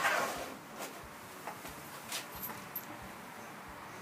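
A hand brushing wood shavings off a routed pine sign, a short rush of noise at the start. It is followed by a few light clicks and scrapes of a carving tool on the wood.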